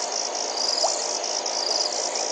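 A steady chorus of crickets: a high, fast-pulsing trill.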